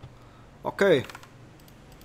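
A few light keystrokes on a computer keyboard, quick clicks in the second half.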